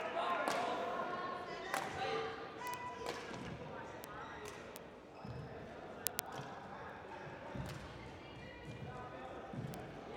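Badminton rally: rackets strike the shuttlecock in a string of sharp clicks about once a second, with background voices in the hall.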